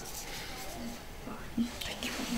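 Quiet speech: soft murmuring or whispering, with one short spoken word near the end.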